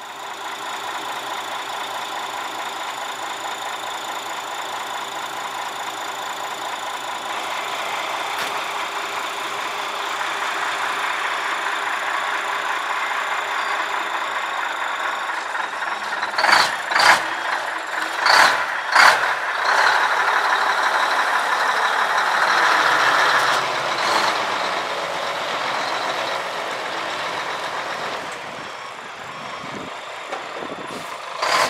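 A 1985 Mack R model tow truck's diesel engine running steadily, with a cluster of short sharp bursts a little past halfway. The engine then runs louder for a few seconds before easing off near the end.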